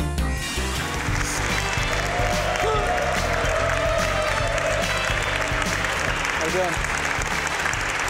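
Audience applauding over background music, with a few voices calling out. The clapping starts about half a second in as the music's beat drops away.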